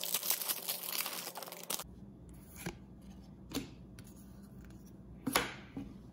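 Silver foil trading-card pack being torn open: one loud crinkly rip lasting nearly two seconds. Then a few faint, short swishes of the cards being slid and handled.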